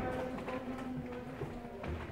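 Background music playing in the room, with held notes, and a soft knock near the end.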